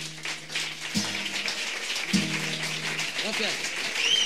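Soundtrack music winding down: a few low plucked guitar notes over a dense, crackling noise.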